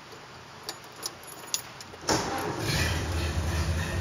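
1929 Ford Model A's four-cylinder engine starting: a few light clicks, then about halfway through the engine fires suddenly and settles into a steady idle.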